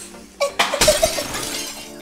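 A sudden shattering crash about a second in, fading away over the next second, over background music.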